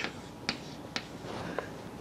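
Stick of chalk tapping against a blackboard as it writes: three short, sharp clicks about half a second apart.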